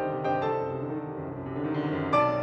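Solo grand piano playing classical music: a few notes struck over ringing chords, softening in the middle and swelling again near the end.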